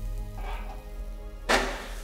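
Water and duck pieces sizzling faintly in a hot wok over a high gas flame, with one short, loud burst of sizzle and scraping about one and a half seconds in, as metal tongs go into the wok to stir.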